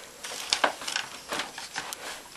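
A few scattered light clicks and rustles from handling and moving the Dyson DC07 upright vacuum, its motor not yet switched on.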